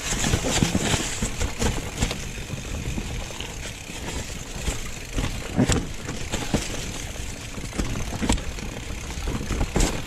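Mountain bike riding downhill over a rocky, leaf-covered singletrack: a constant rolling rattle of tyres over dry leaves and stones, with sharp knocks and clatter from the bike as it hits rocks.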